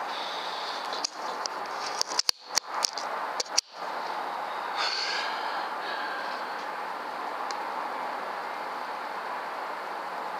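Steady background hiss, with a cluster of sharp clicks between about two and four seconds in, typical of the action of a .22 PCP air carbine being cycled to load the next pellet from its magazine.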